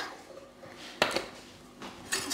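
A single light knock about a second in, with a small second tap right after, as the pastry-lined tart dish is set down on the glass-ceramic hob.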